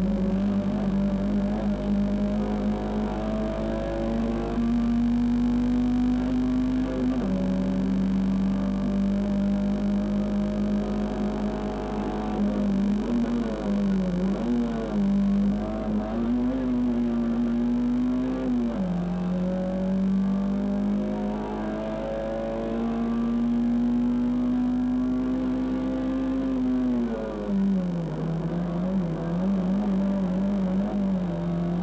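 Racing car engine heard from inside the car, its pitch climbing slowly through each gear and dropping sharply at upshifts, three times. In a couple of places the note wavers up and down as the throttle is eased and reapplied.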